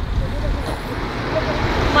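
Faint voices of people talking in the background over a steady, irregular low rumble.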